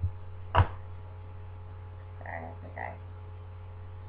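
A steady low hum with two sharp knocks in the first second, the second much the louder, followed by two short, low vocal sounds from a person a little past two seconds in.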